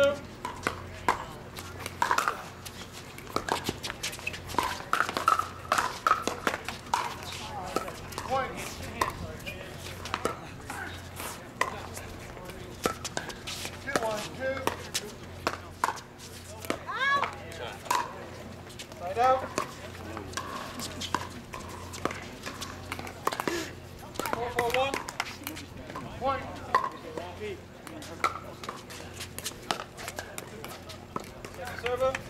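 Pickleball rallies: paddles striking the plastic ball in a string of sharp pops at irregular intervals, with background voices now and then.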